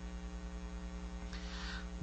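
Steady electrical mains hum from the microphone and sound system, heard in a pause between words. A faint soft hiss comes about two-thirds of the way through.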